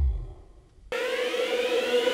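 Electronic intro music. A deep bass swell fades out in the first half second. About a second in, a siren-like synth riser cuts in suddenly: a steady buzzing tone whose upper overtones slide upward.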